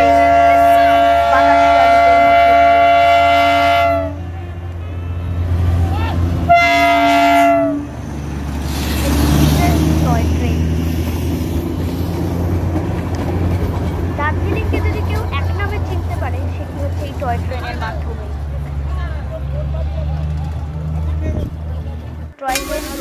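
Darjeeling Himalayan Railway toy train sounding two blasts on its horn, one of about four seconds and a shorter one a couple of seconds later, over the steady low running of the locomotive, with a crowd's voices after.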